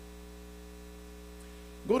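Steady electrical mains hum on the microphone and sound-system feed, a constant low buzz. A man's voice starts again right at the end.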